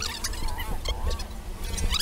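Birds chirping: many short, quick, high calls and squeaks, over a low rumble.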